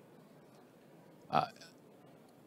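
Near silence in the hall, broken once, about a second and a half in, by a short hesitant "uh" from a man speaking into a microphone.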